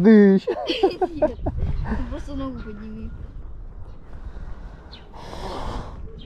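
Voices without clear words: a loud exclamation with a falling pitch at the very start, then wavering vocal sounds for about three seconds. A short breathy hiss follows about five seconds in.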